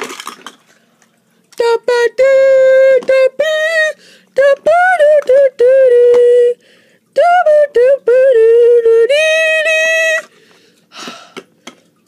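A high voice singing a wordless tune in held notes with short breaks, from about two seconds in until near the end. A brief knock comes at the very start.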